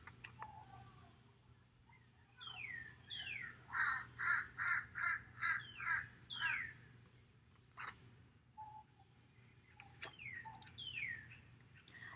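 A bird calling: a few downward-sliding notes, then a run of about seven evenly spaced calls at two or three a second, with more downward-sliding notes near the end. A single sharp click falls just after the middle.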